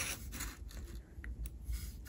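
Faint, soft handling noises as fingers brush and touch a small terracotta pot with its gravel top dressing, with a very brief faint high tone about a second in.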